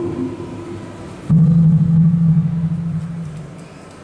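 Live band music in a sparse, slow passage: long low notes ring out and fade away, with a new, louder low note sounding about a second in and dying down toward the end.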